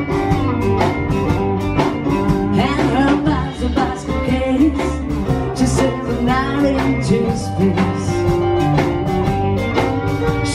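Live blues band playing an instrumental passage: electric guitar, Nord electric keyboard and drum kit together, with no singing.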